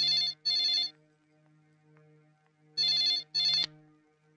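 Landline telephone ringing in double rings: a pair of short rings at the start and another pair a little under three seconds later, before the handset is picked up.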